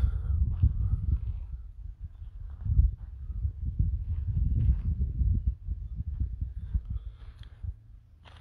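Footsteps on a shingle and gravel beach, irregular faint steps, under steady wind noise on the phone's microphone.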